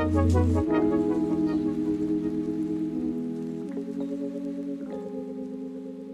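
Background music: soft held chords that change a few times and slowly fade out.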